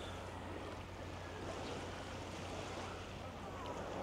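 Faint, steady beach ambience: small waves lapping on the sand and a light breeze, over a constant low hum.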